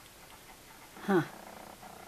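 A woman's short "huh" about a second in, falling in pitch; otherwise quiet room tone.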